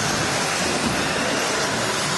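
Steady, even hiss of a pack of 1/10-scale electric 2WD off-road buggies racing round an indoor track, their tyres and electric motors blended together in a large hall.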